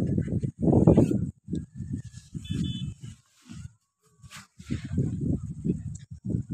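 Irregular low rumbling noise on the microphone. It is strong at first, drops away for about three seconds in the middle with a single sharp click, then comes back near the end.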